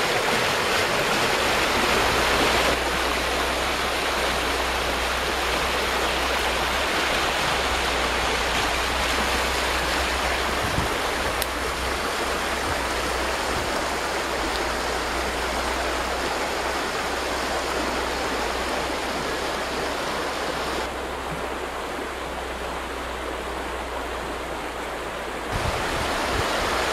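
Small river in spring high water rushing over a shallow rapid on a rock step, a steady full rushing, with a low rumble underneath; the hiss softens a little near the end.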